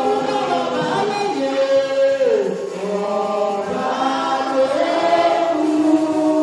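A congregation singing together in worship, many voices holding long notes that step and slide from one pitch to the next.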